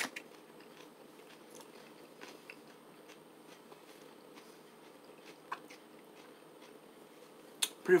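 A person chewing a mouthful of food quietly, faint scattered clicks over a low steady room hum.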